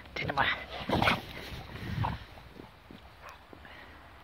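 American bulldog barking a few short times in the first two seconds, then falling quiet.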